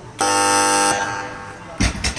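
Weightlifting referee's 'down' buzzer sounding once, a steady tone lasting under a second, the signal to lower the bar after a completed lift. Near the end the loaded barbell is dropped onto the platform with a heavy thump and a smaller bounce.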